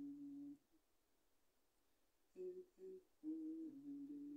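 A man quietly humming a tune with no accompaniment. One held note ends about half a second in; after a pause come two short notes and then a longer held note.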